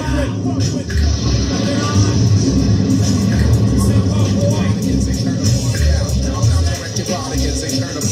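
Early-'90s hip-hop track playing in a DJ mix, with a heavy repeating bass beat and a voice over it.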